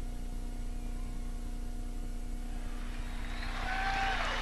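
Steady low hum with faint stadium crowd noise that swells near the end.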